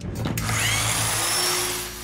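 A loud, steady hissing noise from the film trailer's sound track. It starts abruptly about a third of a second in and fades near the end.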